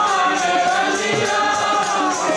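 Sikh kirtan: voices singing a held, wavering melody over a harmonium, with jingling percussion and a drum keeping a steady beat.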